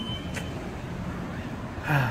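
Steady low rumble of road traffic, with a short click about half a second in.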